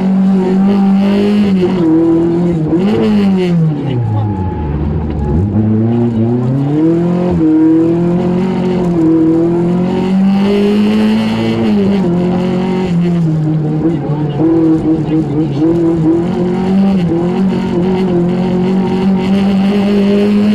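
Lancia Beta Montecarlo's four-cylinder engine running hard, heard from inside the car: the revs fall steeply about four seconds in as the car slows, then climb again through several rises and drops in pitch as the driver accelerates and changes gear.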